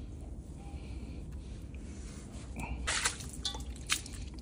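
Water poured from a bucket splashes briefly onto a concrete floor about three seconds in, rinsing a gutted spoon worm held in the hand, over a low steady background hum. A sharp click follows near the end.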